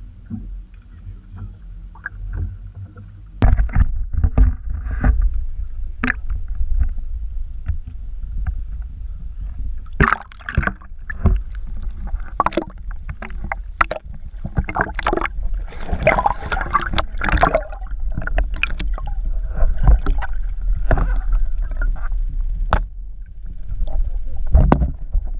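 Water splashing and sloshing at the side of a small boat, with many irregular knocks against the hull and a steady deep rumble, as a large pike is released into the lake.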